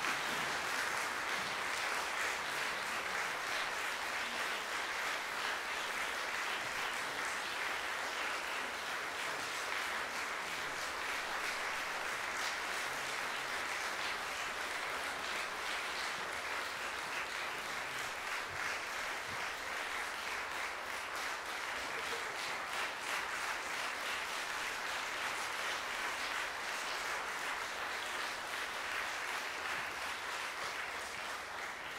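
Audience applauding: dense, steady clapping from a large crowd that eases off slightly toward the end.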